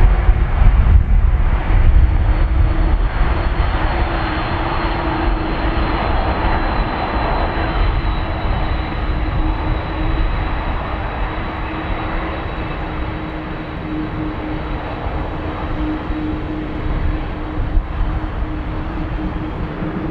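Boeing 747 jet engines running at taxi power: a steady heavy rumble with a whine held at one pitch, loudest at the start and slowly easing off.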